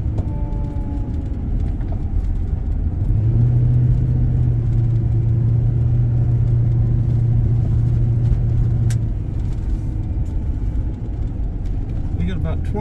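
Car driving at road speed, heard from inside the cabin: a steady low rumble of engine and tyres. A low hum swells about three seconds in and eases near nine seconds.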